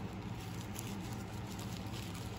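Faint, scattered light ticks and rustles from small items and packaging being handled, over a low steady hum.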